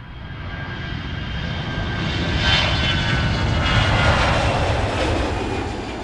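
Jet airliner passing: steady engine noise with a faint high whine swells up, is loudest in the middle, and fades near the end.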